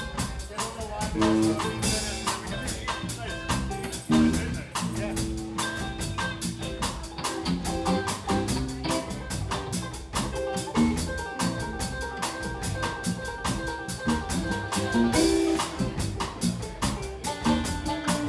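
Live instrumental jam by a small band: electric guitar, electric bass and drum kit playing together over a steady beat.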